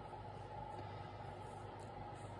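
Faint steady room noise with a low hum, without any distinct handling sounds.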